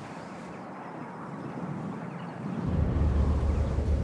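A car driving along a road: a steady hiss of engine and tyre noise that grows louder. A little under three seconds in, a deep low rumble of engine and road noise comes in, as heard inside the car's cabin.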